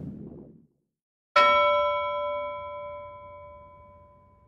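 A single struck bell-like ding, a title sound effect, rings out with several bright tones and fades slowly over about three seconds. It comes about a second in, after the tail of a whooshing sound dies away.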